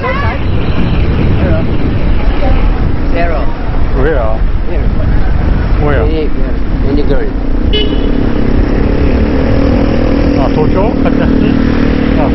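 City street traffic: vehicle engines running close by, with a steady engine drone setting in about halfway through and a short horn toot about two-thirds in, under scattered voices of people on the street.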